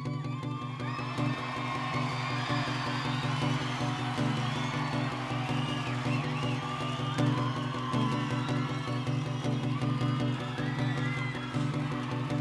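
Acoustic guitars keep strumming a steady chord pattern while a live audience cheers and whoops over it, many rising and falling shouts through the whole stretch.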